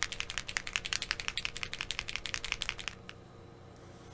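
Bottle of reduced white airbrush paint being shaken, its mixing ball rattling in fast, even clicks about ten a second, which stop about three seconds in.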